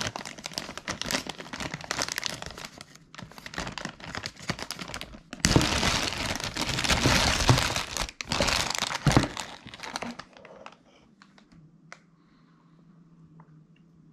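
Clear plastic bag crinkling and rustling in irregular bursts as hands work a power brick and coiled cord out of it. The crinkling is loudest about halfway through and dies away for the last few seconds.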